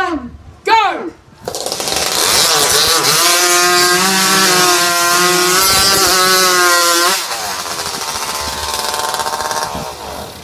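Racing hot saws (modified two-stroke chainsaws) start about a second and a half in and run loud at high revs, cutting through logs with a wavering engine pitch. The sound drops to a lower level about seven seconds in and cuts off just before the end.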